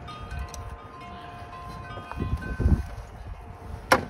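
Wind chimes ringing at several pitches in a breeze, with gusts of wind on the microphone about halfway through and a sharp knock just before the end.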